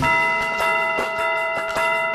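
A cartoon clock chime: a single bell-like strike that rings on and slowly fades, with faint ticking beneath it.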